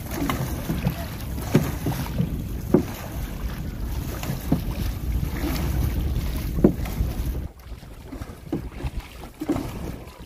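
Wind buffeting the microphone on a dragon boat under way, with a few short sharp sounds from the crew's paddling. The wind rumble drops away suddenly about seven and a half seconds in.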